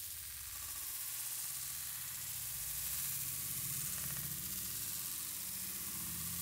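Faint, steady sizzle of paneer cubes frying in oil in a pan as they are tossed, with a low hum underneath.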